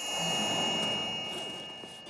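A cartoon scene-transition sound effect: a sustained shimmering ring with a high steady tone over a soft hiss, swelling at first and then slowly fading.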